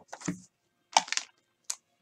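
Short sharp clicks and taps of hands working at a desk: a quick cluster about a second in and a single click near the end.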